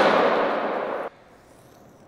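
Skateboard wheels rolling on a smooth concrete floor, a steady hiss that fades slightly and cuts off suddenly about a second in, leaving quiet room tone.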